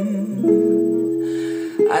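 Guitar instrumental backing track between sung phrases: held chords ring, changing about half a second in, with a new chord struck near the end as the voice comes back in.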